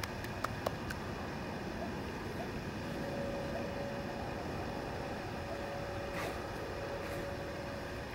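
Steady faint outdoor background noise, with a faint steady hum joining about three seconds in and a few faint clicks in the first second.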